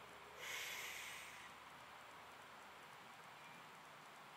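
A squatting lifter's hard, noisy breath through the mouth, about a second long, starting about half a second in, taken at the top between reps of a heavy barbell back squat.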